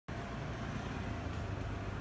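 Steady low background rumble with a faint constant high tone over it, unchanging throughout.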